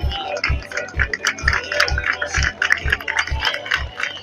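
Music with a steady kick-drum beat, about two beats a second.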